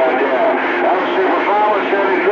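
CB radio receiving on channel 28 (27.285 MHz): voices from distant stations come through garbled and overlapping, over a steady hiss of static.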